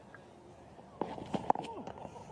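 Cricket ground field sound from the broadcast: low crowd ambience, then a few sharp knocks about a second in as the delivery is bowled, with brief shouts from the field.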